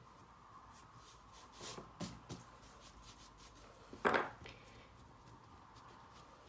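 Hands folding, patting and rubbing a block of puff pastry dough on a wooden board: soft rubs and light taps, with one louder tap about four seconds in, over a faint steady hum.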